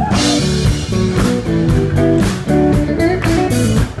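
Live blues band playing an instrumental passage: electric guitar over bass and drum kit, with a steady beat.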